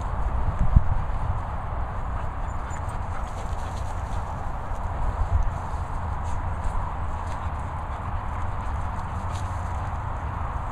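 Wind rumbling on the camera's microphone outdoors, with a louder bump just under a second in.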